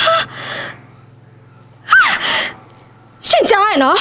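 Speech only: a woman speaking in three short, sharply rising and falling bursts, over a faint steady low hum.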